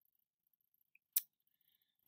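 A single short, sharp click a little over a second in, against otherwise near silence.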